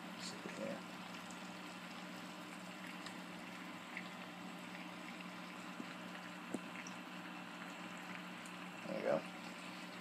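Hydroponic bucket's air pump running with a steady low hum while water bubbles faintly, a few small clicks from handling the plant.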